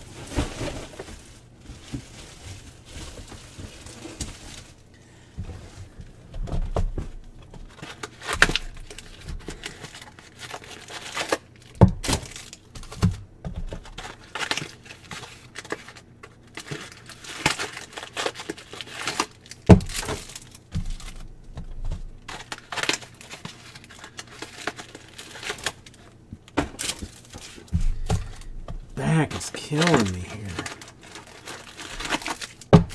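Card packaging being handled: wrappers and cardboard crinkling and tearing in an irregular run of crackles as hobby boxes and card packs are opened, with a few heavier knocks, the loudest about twelve and twenty seconds in.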